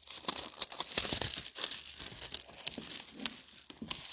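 Pages of a Bible being turned by hand: a continuous run of paper rustles and crinkles with small flicks.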